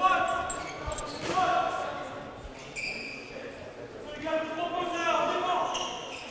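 Handball practice play on an indoor court: short, level shoe squeaks on the hall floor, voices calling, and one low ball thud about a second in, echoing in the large sports hall.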